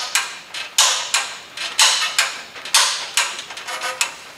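Hand-lever ratcheting tube bender clicking as its handle is worked to bend half-inch steel conduit: sharp metallic clicks, mostly in pairs, about one pair a second.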